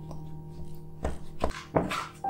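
Dough scraper card scraping and knocking against a glass bowl while mixing sticky bread dough, several quick strokes in the second half.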